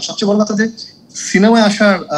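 A person's voice speaking, with one drawn-out sound that rises and falls in pitch in the second half.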